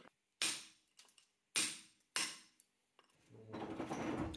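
Hammer striking a hand chisel against a granite blank on a lathe, three sharp blows, the last two close together, chipping stone off the rough edge of a blank that was drilled off-centre.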